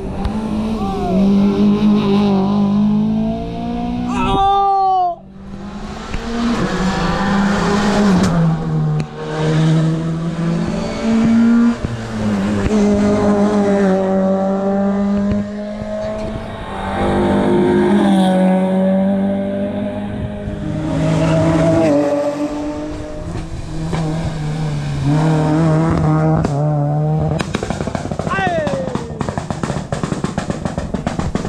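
Rally car engines revving hard at speed, the pitch climbing and then dropping at each gear change. About four seconds in, one car passes with a sharp fall in pitch.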